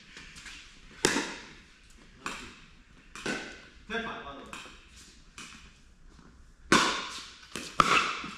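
Sharp pops of a plastic pickleball against paddles and the court, echoing in an indoor hall: a few spaced hits, then a quick run of several near the end as a rally gets going.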